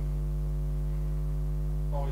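Steady electrical mains hum in the sound system, one low constant tone with a row of evenly spaced overtones above it.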